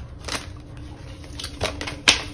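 Tarot cards being handled and shuffled in the hands: short crisp card snaps and rustles, one about a third of a second in and a few more near the end.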